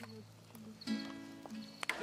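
Acoustic guitar being strummed: a chord at the start rings on and fades, and a second chord struck about a second in rings out, with sharp pick clicks at the start and near the end.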